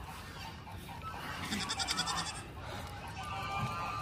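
Goats bleating faintly, with a short run of high, rapid chattering about a second and a half in.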